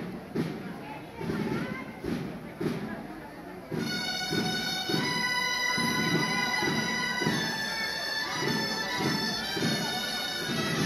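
Crowd chatter, then about four seconds in a loud, shrill double-reed shawm starts playing long held notes, the traditional tune played while human towers are being built; talk carries on underneath.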